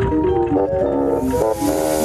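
Melodic background music of short stepped notes. About a second in, a steam-like hiss from the Tubby Toast machine begins under it.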